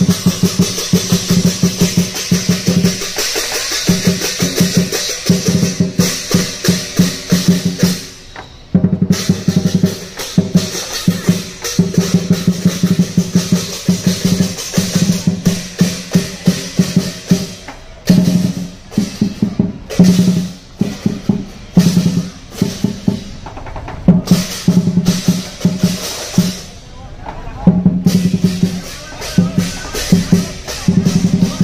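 Lion dance percussion: a large drum beaten in fast, driving strokes with crashing cymbals, breaking off briefly about eight seconds in and again near the end.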